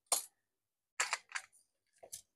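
Three short, sharp clicks of small metal tools and parts on a circuit board during soldering work: one just at the start, then two close together about a second in.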